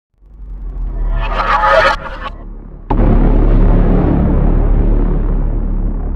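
Cinematic intro sound effects: a rising whoosh builds for about two seconds and cuts off. About three seconds in, a sudden boom hits and trails into a long, low rumbling drone that slowly fades.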